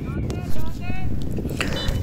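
Field sound from an amateur football match: two or three short, distant shouts from people on the pitch in the first second, over a low steady rumble.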